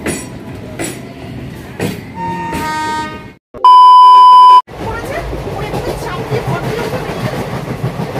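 Train sounds with a few knocks and a short pitched tone, then a very loud, steady one-second beep of a test tone from a colour-bars video transition. After it comes the running noise inside a train compartment, with passengers talking.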